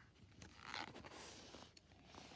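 Faint swishing rustle of a picture book's paper pages being handled by hand, starting about half a second in and lasting about a second.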